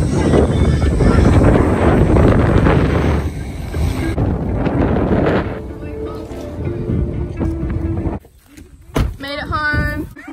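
Wind buffeting the microphone out of a moving car's open sunroof, loud for about five seconds, then easing, with faint steady tones underneath. It cuts off suddenly about eight seconds in, and a brief high-pitched call comes just before the end.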